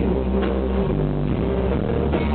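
Live rock band playing loudly: bass guitar, drum kit and electric guitar, with sustained bass notes and drum hits.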